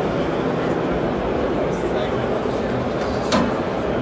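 Crowd chatter of many overlapping voices in a large indoor hall, with a sharp click about three seconds in.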